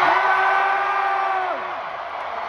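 Arena crowd cheering as the song ends, topped by a long held whoop that rises at the start, holds one pitch and falls away near the end.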